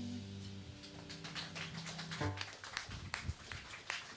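A live rock band's song ending: held bass and keyboard notes ring on and fade, and a short final chord comes about two seconds in. Scattered sharp taps follow.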